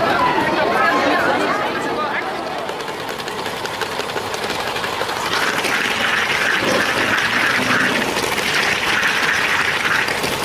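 Crowd chatter at first, then the LEGO train's small electric motor and wheels running on the plastic track as a fast, steady rattle that grows louder about five seconds in.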